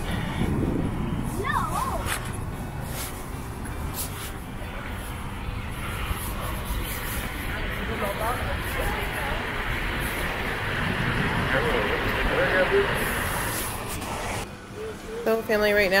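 Outdoor city ambience: wind rumbling on the microphone and distant traffic, with faint voices of people nearby. A man starts talking near the end.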